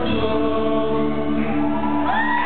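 Live rock band music: a held, sustained chord with singing voices, at a steady loud level.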